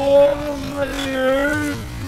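A human voice slowed to a third of its speed: a long, low, wavering moan whose pitch drifts slowly up and down.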